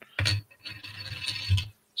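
A small gold metal token scraping and rattling against a wooden desktop as it is handled, for about a second, with a sharp click near the end.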